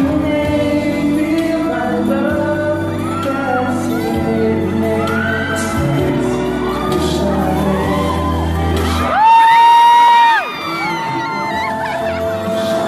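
A male singer sings live into a microphone over backing music, heard through the hall's PA. About nine seconds in, a loud, high cry from the audience close to the phone is held for just over a second before the song carries on.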